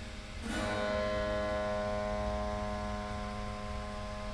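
Strings of a dismantled piano's frame set sounding with a sudden attack about half a second in, then a cluster of tones ringing on and slowly fading. A low steady hum runs underneath.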